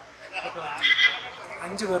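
A man's voice talking, with a short high-pitched vocal sound about a second in.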